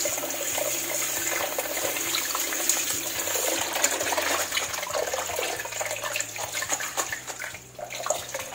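Kitchen tap running into a stainless steel bowl of leafy greens while hands swish and rub the leaves, a steady splashing rush of water with a brief lull near the end.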